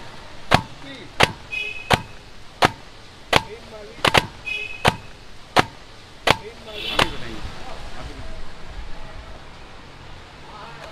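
A cooked paratha being beaten by hand in a black iron pan: about ten sharp, loud slaps, roughly one every 0.7 s, stopping about seven seconds in. The beating crushes the flatbread to loosen its layers, as in Kolkata's pitai (beaten) paratha.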